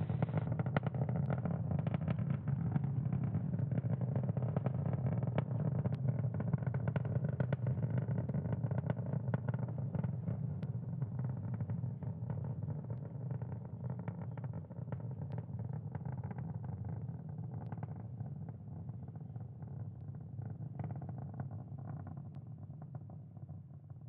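The nine Merlin 1D engines of the Falcon 9's first stage, heard on the rocket's onboard audio during supersonic ascent: a steady low rumble with crackling that fades gradually toward the end.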